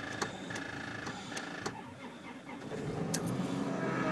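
A repeating high chime with a few clicks, then from about three seconds in the starter cranking the van's engine, getting louder. It is a cold start at about −33 °C with the block heater left unplugged, and the engine catches just after.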